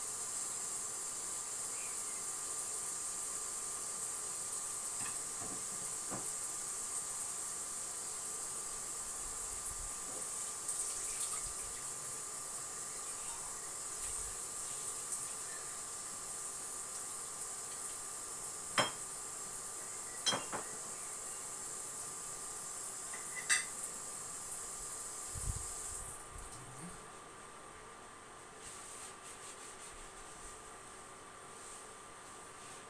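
A steady, high-pitched hiss, with a few sharp clinks of kitchenware about two-thirds of the way through; the hiss cuts off suddenly near the end.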